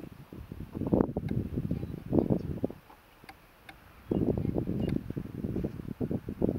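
Wind buffeting the microphone in irregular low gusts, strongest about a second in, again after two seconds, and in a longer gust near the end.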